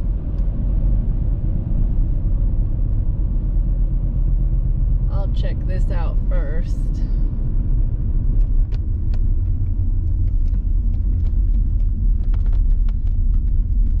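Steady low rumble of a car's road and engine noise, heard from inside the moving car's cabin.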